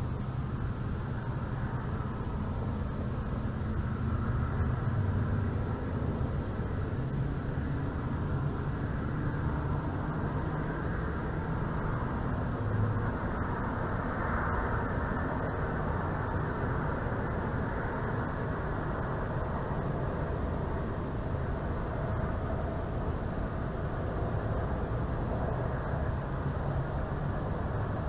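Steady low outdoor rumble with a faint wavering hum, swelling slightly a few seconds in and again around the middle.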